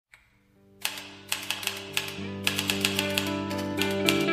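Typewriter keys striking in an irregular run of sharp clicks, starting about a second in, over intro music of held notes that grows louder.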